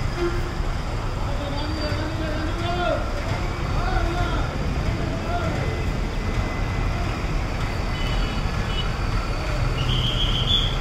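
Steady low rumble of idling diesel bus engines at a busy bus stand, with people's voices talking in the background during the first several seconds.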